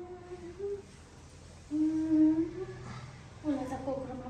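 A woman humming a tune in three long held notes, each about a second, with gaps between them.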